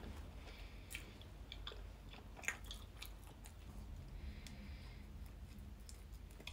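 Faint chewing of a soft, sticky tortilla wrap filled with dates and honey, with small wet mouth clicks; one sharper click about two and a half seconds in.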